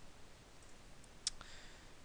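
A single computer mouse click slightly past a second in, over faint room tone.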